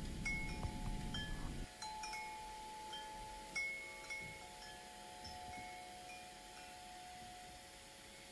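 Soft chime tones struck at irregular moments, each ringing on and fading, the whole growing gradually quieter. A low background rumble under them stops suddenly about a second and a half in.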